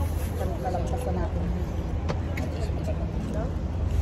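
Restaurant dining-room background: indistinct voices over a steady low hum, with a single sharp click about two seconds in.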